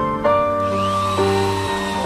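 Instrumental background music with sustained keyboard notes. Under it, from about half a second in, a small electric drill runs with a high whine that rises and then falls as it bores into the bamboo tube.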